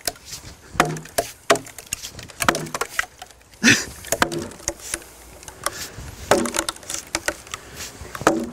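A wooden Saxon-style mallet driving wooden wedges into a tree trunk to split it along the grain: a series of sharp wooden knocks of uneven strength. The loudest comes a little before four seconds in, and a quicker run of blows follows near the end.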